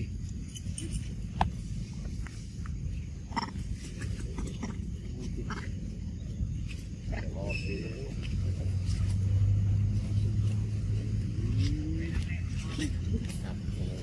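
Outdoor background with a low steady engine hum that comes in about eight seconds in and carries on to the end. Over it are faint voices, a few short calls and small clicks.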